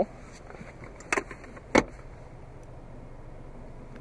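Two sharp clicks inside a car's cabin, about two-thirds of a second apart, the second louder, over a faint steady low hum.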